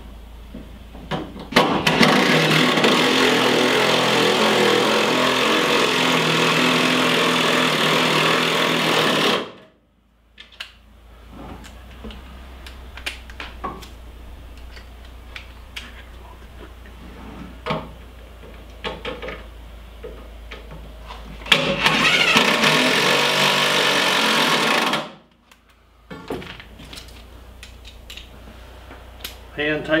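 Handheld power drill running steadily in two long runs, the first about eight seconds, the second about three and a half seconds, working on the screws of a metal storage-case bracket. Small clicks and knocks of handled tools and hardware come between the runs.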